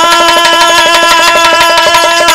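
Instrumental folk accompaniment: a single melody note held steady over quick, regular hand-drum strokes.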